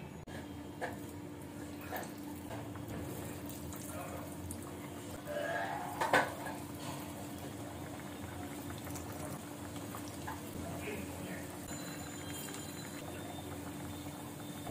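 Hot oil sizzling steadily as lentil fritters (piyaju) deep-fry in a pan. A sharp clink comes about six seconds in.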